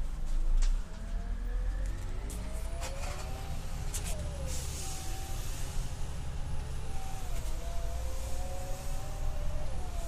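Orion VII CNG transit bus engine running, a steady low rumble with a whine that rises and falls slowly in pitch. A few sharp clicks in the first four seconds.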